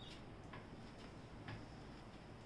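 A whiteboard duster being rubbed across a whiteboard, heard as faint short clicks about twice a second with each stroke.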